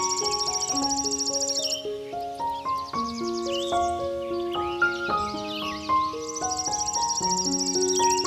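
Slow, gentle solo piano music laid over a nature recording. A high, rapid insect trill stops about two seconds in and returns near the end, with birds chirping in between.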